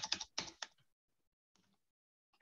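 Quick keystrokes on a computer keyboard: a short run of taps that stops about two-thirds of a second in, then one or two faint taps a little later.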